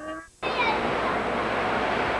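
Steady wind rushing over a home-video camcorder's microphone, starting suddenly after a brief audio dropout at a tape edit.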